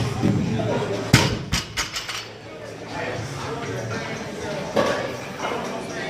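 A barbell loaded to 315 lb set down or dropped onto the gym floor after a deadlift lockout: a loud bang about a second in, then a few smaller knocks as the plates settle.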